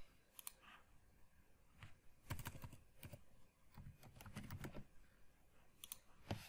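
Faint computer keyboard keystrokes and clicks, scattered at first and then in short quick runs in the middle, as a value is typed into a code editor.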